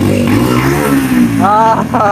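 Motorcycle engine with an aftermarket exhaust revved once, its pitch climbing and then dropping back over about a second. A man's voice calls out near the end.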